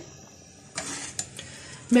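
A metal slotted spoon moving through macaroni in a pot of boiling water, with a few light clicks of the spoon against the aluminium pot starting about a second in, over the soft sound of the water boiling.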